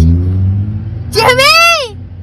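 Low steady car-engine rumble inside the cabin, with a faint rising tone near the start. About a second in, a person's drawn-out vocal exclamation rises and then falls in pitch over it.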